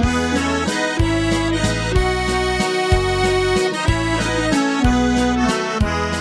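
Accordion playing the instrumental break of an East Slovak folk song, with held chords over a bass line and a steady beat.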